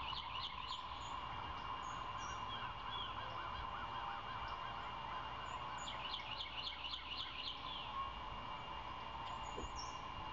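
Wild songbirds singing. One bird gives a phrase of about eight quick, high, slurred notes right at the start and repeats it about six seconds in, over a quieter run of lower repeated notes and a steady faint hum.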